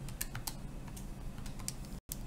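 Keys of a TI-84 Plus Silver Edition graphing calculator being pressed while a calculation is entered: a few light clicks at irregular intervals.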